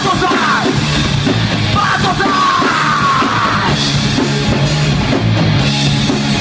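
Loud live rock band playing: electric guitars and a drum kit, with a yelled vocal line that falls in pitch from about two seconds in to nearly four.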